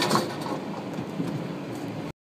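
Steady background noise inside a vehicle's cabin, with a short knock right at the start and a few faint clicks.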